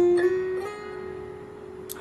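Acoustic guitar playing a short single-note lead line. Two notes are picked at the start, and the last is left ringing and slowly fading.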